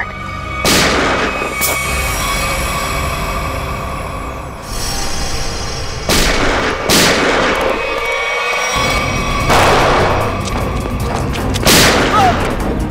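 Dramatic background score with about six loud pistol-shot effects, each with an echoing tail, spread across the stretch; one near the end of the second third is longer and heavier, like a boom.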